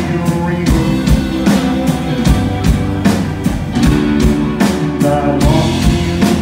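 Live rock band playing a song with a steady drum beat, bass, electric guitar and keyboard.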